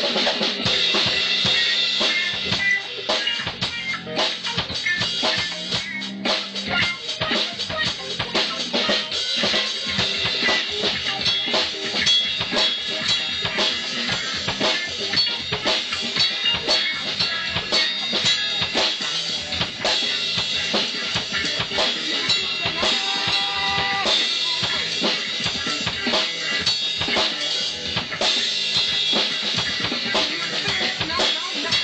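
An acoustic drum kit played continuously in a punk-style beat, with bass drum, snare and cymbals.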